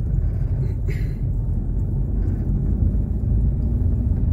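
Steady low rumble of a car driving along a street paved with interlocking blocks.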